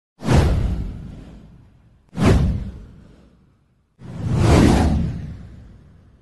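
Three whoosh sound effects for an animated title card. The first two start sharply about two seconds apart and fade away over a second or so; the third swells up more gradually before fading.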